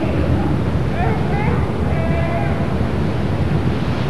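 Loud, steady rush of rough, churning water and wind on the microphone as a center-console boat pounds through choppy waves, with a couple of brief raised voices about one and two seconds in.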